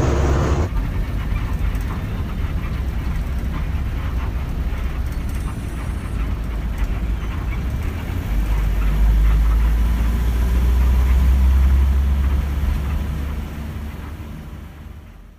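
Steady low rumble of a moving bus heard from inside the cabin: engine and road noise. It grows louder about eight seconds in and fades out near the end.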